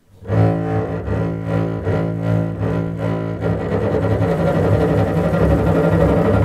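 Baroque double bass (violone) with gut strings, bowed alone, playing a steady run of short repeated low notes: the contrabass line of a Baroque opera storm scene.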